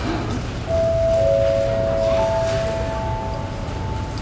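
Airport public-address chime before a boarding announcement: three notes sounded one after another, a middle, then a lower, then a higher tone, each ringing on and overlapping the next.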